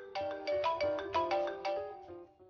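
A smartphone ringing for an incoming call: a ringtone melody of quick, short notes, about six a second, fading out near the end.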